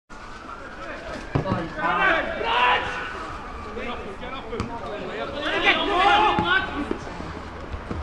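Players shouting and calling out across an open football pitch, with a few sharp thuds of the ball being kicked.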